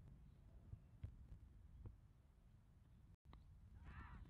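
Near silence at a cricket ground: a low steady rumble on the microphone with a few faint knocks, and faint voices starting right at the end.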